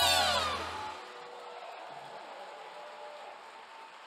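The end of a live salsa orchestra's final held chord: the horns slide down in pitch over a low sustained note and die away about a second in. A faint, even hall noise follows.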